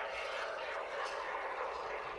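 Can of minimal-expansion insulating spray foam hissing steadily as foam is sprayed into the gap above a door jamb.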